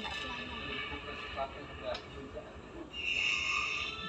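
Indistinct speech in the background, over a steady hiss.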